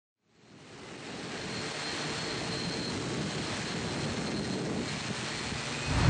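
Multirotor camera drone in flight, heard from its onboard camera: a steady rush of propeller wash and wind with a faint high motor whine, fading in over the first second.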